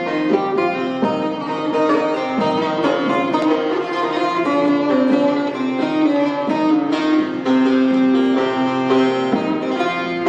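Bağlama (Turkish long-necked saz) playing the melody of a Turkish folk song, a continuous run of plucked notes with some held longer.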